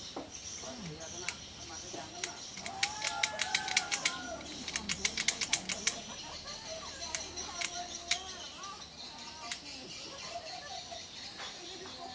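Sharp clicks from hand work on wiring at a toggle-switch panel: two quick runs of about ten clicks a second, starting about three seconds in and again about five seconds in, with single clicks scattered before and after.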